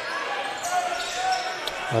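Court sound of an indoor basketball game: a crowd murmuring in the hall and a basketball bouncing on the court floor.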